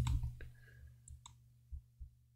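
A few computer mouse clicks, two in quick succession about a second in, over a faint steady low hum.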